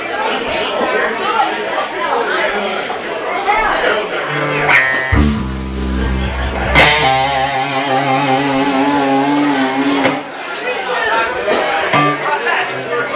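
Electric guitar and bass sounding held notes through an amplifier about four seconds in, the bass note strong and the chords ringing for several seconds before dying away under room chatter, as the band gets ready to start the next song.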